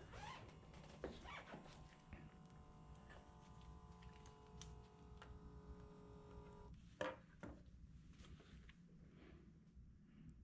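Omron automatic blood pressure monitor's small pump motor faintly running as it inflates the arm cuff, a steady hum that cuts off suddenly about two-thirds of the way through. A sharp knock follows a moment later.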